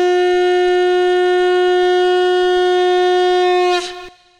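Conch shell (shankh) blown in one long, steady note that cuts off just before the end, sounded at the coronation rite.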